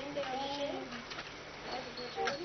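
Soft, indistinct children's voices, with a couple of briefly drawn-out tones.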